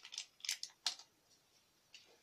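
A small paper sachet of vanilla powder rustling as it is shaken and tapped out over a bowl: four short, dry rustles within the first second.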